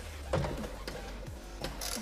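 A 10 mm socket wrench undoing the tail-light mounting nuts: a few sharp metallic clicks and scrapes, a cluster of them near the end, over a low steady hum.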